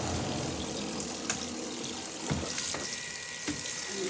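Rinse water from a portable washing machine's drain hose running and splashing into a sink basin, with a few light knocks.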